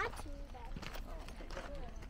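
Footsteps on a rocky dirt trail, a few distinct steps spaced under a second apart, under faint voices.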